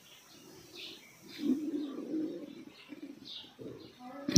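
Birds calling: a low cooing call about a second and a half in, a shorter one near the end, and faint high chirps.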